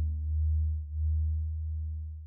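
The last deep bass note of a soft cinematic chill track ringing out: a steady low tone with thin overtones above it, wavering slightly in loudness and fading away toward the end.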